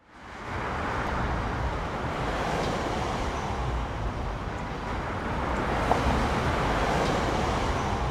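Steady city street traffic noise, a continuous rumble and hiss that fades in at the start.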